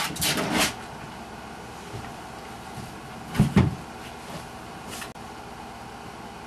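Plastic rocker gaming chair rocking and knocking on carpet as a Border Collie puppy jumps against and pushes it: a clatter of knocks at the start and a louder double knock about three and a half seconds in.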